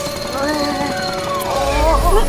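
Cartoon sound effect of a helicopter's winch paying out cable to lower a rescue capsule: a rapid, steady mechanical rattle, with a deep rumble building near the end, under melodic music.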